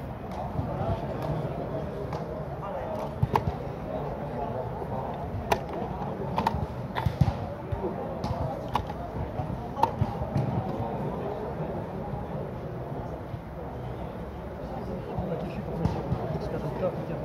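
Sharp wooden clicks of chess pieces being set down and mechanical chess clock buttons being pressed during blitz play, coming irregularly, with a close pair about three seconds in. Indistinct voices murmur underneath.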